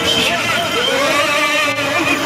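Crowd shouting and calling out, many voices at once with long held cries overlapping one another.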